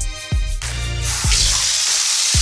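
Water running from a single-lever chrome bath mixer tap into the bathtub, starting about a second in as a steady hiss. Background music with a steady beat plays underneath.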